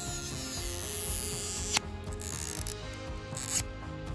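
Stretch-release adhesive strips being pulled out from under an iPhone 11 battery, with a sharp click about two seconds in, over background music.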